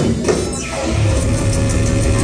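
A heavy rock band playing loud and distorted live, with guitars, bass and drums. The sound thins out briefly with a falling high sweep about half a second in, then the full band comes back in with a heavy low end.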